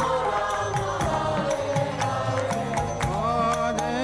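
Devotional kirtan: voices chanting a mantra to music, with percussion striking a steady, fast, even beat throughout.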